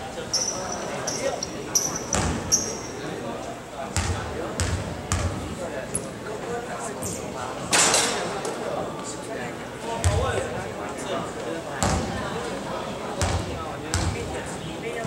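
Basketball bouncing on a wooden gym floor, a thud every second or two as a player dribbles at the free-throw line. Just before eight seconds in, a louder sharp knock comes as the free-throw shot meets the rim. Voices chatter in the hall.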